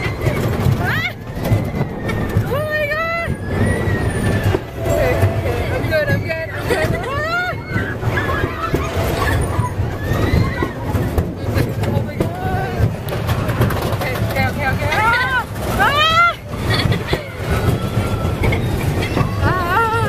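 Riders on a moving amusement ride letting out repeated high, arching shrieks and squeals of excitement, one every second or two, over a steady low rumble of the ride running.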